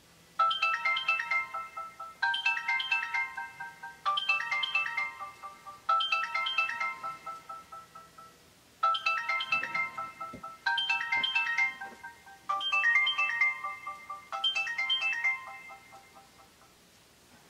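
Alarm ringtone playing a short bell-like melody of quick notes, eight times over at about two-second intervals, each phrase fading out, with a brief pause about halfway. It is the morning alarm going off to wake a sleeper.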